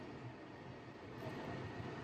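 Steady low hum and hiss of a car idling, heard from inside the cabin.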